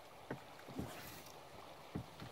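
Water lapping against the hull of a small wooden boat, giving three short, low slaps over a steady wash of moving river water.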